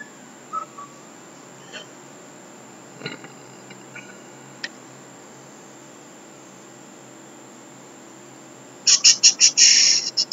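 Faint steady hiss with a few faint short chirps and clicks, then, about a second before the end, a sudden rapid run of loud, high chirps, about six a second.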